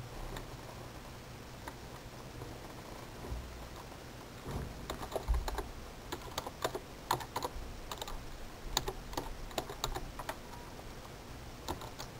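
Typing on a computer keyboard: a run of irregular keystrokes starting about four and a half seconds in and lasting about six seconds, as a web address is typed.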